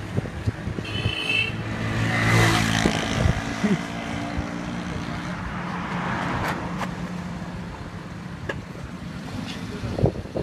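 Road traffic: a vehicle engine runs close by, growing louder to a peak between two and three seconds in and then fading, over steady background traffic noise.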